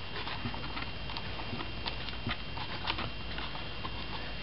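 Faint handling noise of fingers working a small clevis on a wire aileron pushrod: a few scattered light clicks over a steady hiss.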